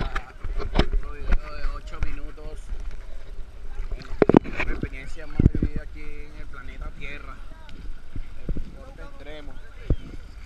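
Indistinct voices of people talking in the water, over a low rumble of water and wind on the microphone. Water slaps against the camera housing in sharp hits, the loudest a little past four seconds and again about five and a half seconds in.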